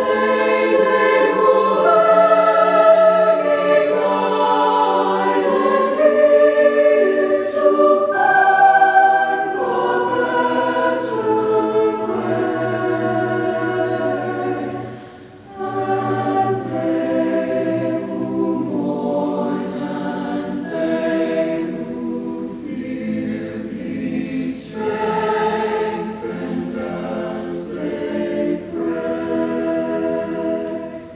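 Mixed high-school choir of young men and women singing in parts, with a brief break about halfway through before the voices come back in.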